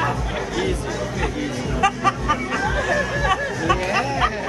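Many voices chattering in a crowded restaurant dining room over background music with a steady, low beat.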